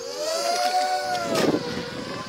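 Small quadcopter drone's propellers whining, the pitch rising and then easing back down as the motors speed up and slow. A brief burst of noise cuts across it about a second and a half in.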